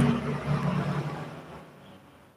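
A low steady hum under a noisy wash of background sound, fading away gradually.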